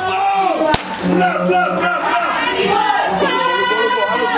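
A thick rope whip cracked once, a sharp snap about three-quarters of a second in, over voices singing throughout.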